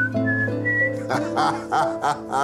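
Background score: a light melody of short, high, whistle-like notes over steady held low tones. From about a second in, a voice-like pitched sound joins it.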